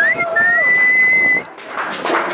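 A person whistling loudly: a short rising whistle, then one long held whistle that stops about a second and a half in.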